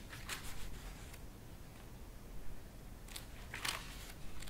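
Paper pages of a paperback book being handled and turned: crisp rustles about a third of a second in and again near the end.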